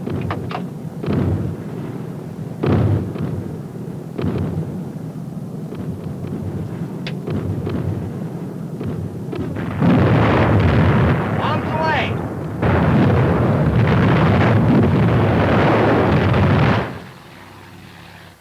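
Soundtrack of a WWII bombing run: a steady aircraft engine drone with single loud bangs about one, three and four seconds in. From about ten seconds in comes a long, loud stretch of bomb explosions that cuts off suddenly near the end.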